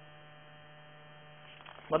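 Faint, steady electrical hum with a buzzy row of even overtones.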